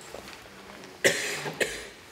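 A man coughing twice into a podium microphone, a loud cough about a second in and a second, shorter one about half a second later.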